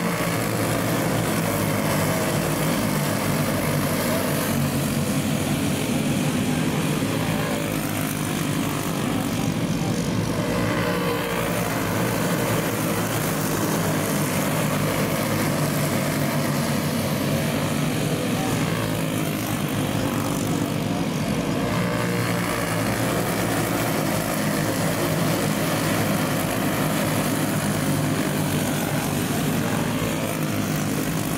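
A pack of dirt-track racing karts' small engines buzzing together at race speed. Their overlapping pitches waver up and down as the karts lift and accelerate through the turns.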